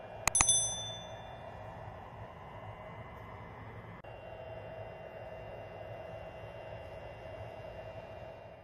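Two quick mouse-style clicks and a bright bell ding that rings out and fades over about a second: a subscribe-button sound effect. After it, a faint steady hum from a plugged-in GermGuardian GG1000 UV air sanitizer.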